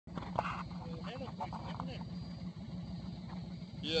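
Motorcycle engine idling with a steady low pulse, under faint voices talking.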